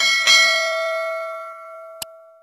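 Bell-ring sound effect of an animated subscribe button's notification bell being clicked: struck twice about a quarter second apart, then ringing on several tones and fading over about two seconds. A short click near the end.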